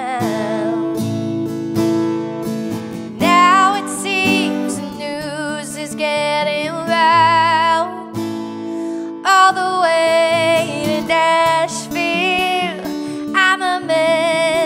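A woman singing with a strummed acoustic guitar, in phrases with vibrato on the held notes and short breaks between them.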